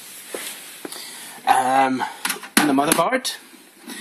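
A man's voice in two short bursts of speech in a small room, after a second and a half of faint hiss with a light click.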